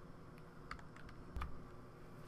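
A few faint, scattered computer clicks over quiet room tone.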